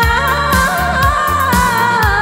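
A Vietnamese song sung into a microphone over backing music with a steady beat, the singer holding and bending long notes.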